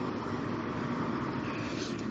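Steady background noise, an even hiss and hum with no distinct events.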